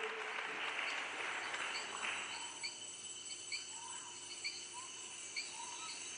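Rainforest ambience from the opening of a video's soundtrack played over hall speakers: short animal chirps repeating about once a second, after a hiss that stops about two seconds in.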